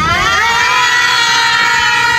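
A voice holding one long, high call that rises in pitch at the start and then stays level for over two seconds.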